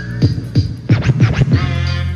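Hip-hop track with turntable scratching cut in over the beat: a run of quick back-and-forth scratches about halfway through.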